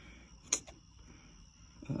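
A single sharp click about half a second in, followed by a fainter tick, against quiet background; a man's voice starts near the end.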